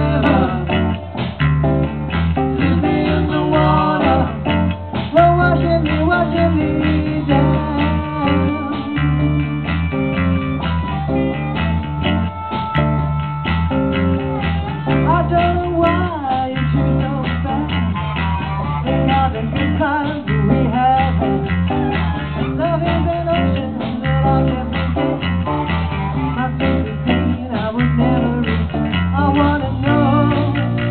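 Live blues-rock band playing an instrumental break: amplified harmonica over electric bass and drums, with long held harmonica notes in the middle.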